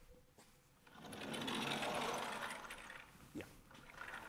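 A sliding lecture-hall blackboard panel rumbling along its track as it is pushed up, swelling and fading over about two seconds.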